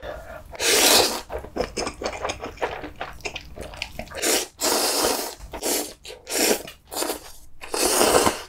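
A person slurping ramen noodles from a spicy kimchi sausage stew in several loud, wet sucking draws: one about a second in, a run of them in the second half, and another at the end.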